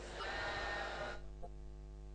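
The fading tail of a chanting voice dies away in the first second. A faint steady hum is left.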